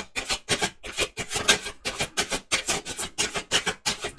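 A deck of tarot cards being shuffled by hand: a quick, irregular run of papery rasps and slaps, several a second.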